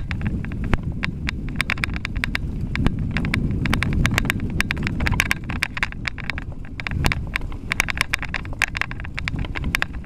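Mountain bike riding fast down a bumpy dirt singletrack: a steady low rumble of tyres and wind on the microphone, with a dense, irregular run of sharp clicks and rattles from the bike shaking over the rough ground.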